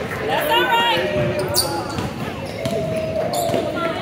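A basketball bouncing on a hardwood gym floor, with players' voices and shouts mixed in.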